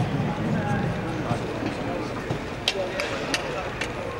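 Indistinct murmur of people talking, with four sharp camera-shutter clicks in the second half.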